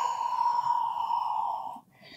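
A woman's long, steady, audible exhale through the mouth, breathy with no voice in it, that stops about two seconds in. It is the cued out-breath of a Pilates breathing pattern, taken while rounding the back.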